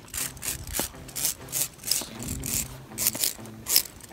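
Footsteps scuffing and scraping on gritty granite slab during a walking descent, about two to three gritty steps a second.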